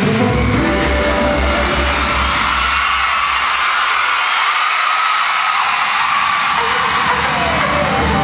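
Amplified pop music at a live concert, heavy bass beat, under a crowd of fans cheering and screaming. Midway the beat drops out, leaving the crowd's screams and a long falling tone, before the bass comes back in near the end.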